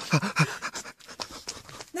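Quick panting breaths and short muffled voice sounds from a man with a clementine clamped in his teeth, playing the dog.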